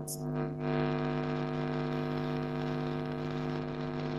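Steady electrical hum through an open microphone on the video call, one low pitch with many overtones held without change. It is unwanted noise on the call, called terrible, and the class mutes their microphones to find whose line it comes from.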